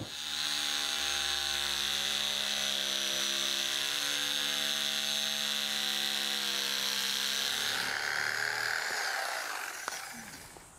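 Electric knife switched on and running steadily with a hum as its blades saw through four-inch-thick foam. About eight seconds in, its sound changes and dies away as it stops.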